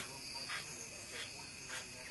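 Crickets chirping faintly in the background: a steady high-pitched trill with soft pulses about twice a second.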